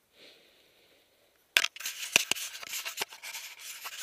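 Near silence, then about a second and a half in, loud close-up rubbing and rustling, broken by several sharp clicks, as fabric and gear rub right against the microphone.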